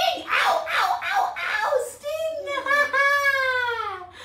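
Playful voices of a woman and a small child, ending in one long high cry that slides down in pitch.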